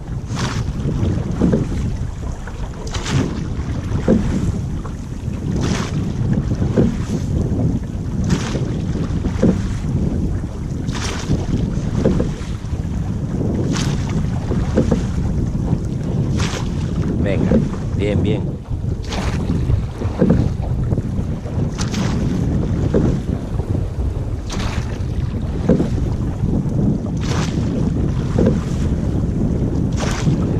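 Llaüt rowing boat being rowed at a steady stroke: a knock and splash from the oars about every two and a half seconds, over water rushing along the hull and wind buffeting the microphone.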